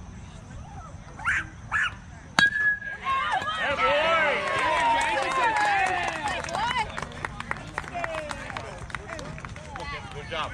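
A metal baseball bat hits a pitched ball about two and a half seconds in: a sharp ping that rings briefly. It is followed by several voices yelling and cheering for a few seconds.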